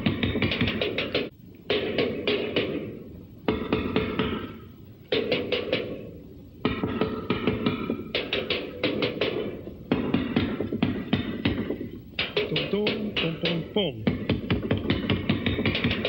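A small drum kit of bass drum, tom-toms and cymbal played in fast, loose bursts of quick strokes, each run lasting a second or two and broken by short pauses.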